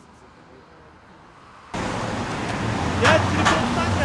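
Outdoor city traffic ambience, faint at first, then a sudden jump in level less than two seconds in to louder, rumbling road traffic noise.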